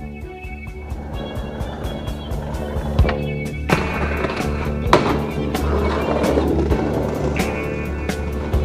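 A skateboard on a metal handrail, heard over music with a steady bass line. About three seconds in, the board hits the rail with a sharp clack and grinds down it. A hard slap follows as the skater lands at the bottom, then the wheels roll away on the pavement.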